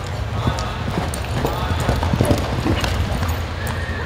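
Hoofbeats of a reining horse loping and turning on soft arena dirt, irregular muffled thuds over a steady low hum, with indistinct voices in the background.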